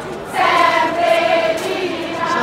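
A crowd singing a contrada song together, many voices on one melody. About half a second in they swell into a long held note.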